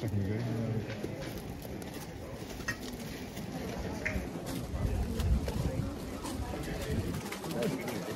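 Pigeons cooing low and repeatedly over the murmur of a crowd talking.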